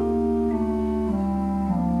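Organ playing slow, sustained chords that change step by step every half second to a second, each chord held without fading.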